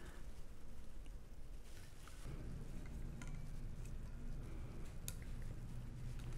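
Faint rubbing with a few small clicks as a rubber boot is worked by hand onto the base of a stainless steel Hydro Flask bottle.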